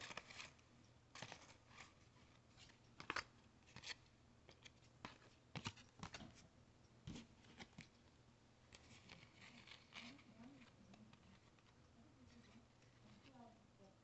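Faint, scattered clicks and rustles of 1992-93 Fleer Ultra hockey cards being handled and shuffled in the hands, with quiet gaps in between.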